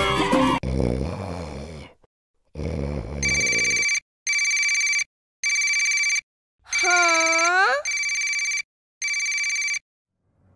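Cartoon mobile phone ringing: a high electronic ringtone in six short, evenly spaced bursts, about one a second. A character's voice with a rising pitch sounds over one of the rings about seven seconds in.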